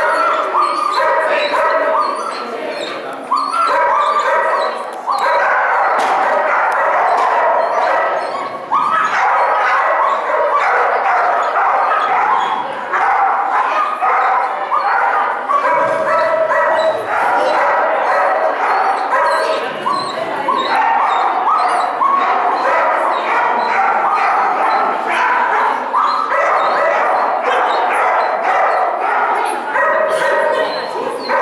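Dogs barking and yipping excitedly almost without pause, the calls overlapping and echoing in a large hard-walled hall.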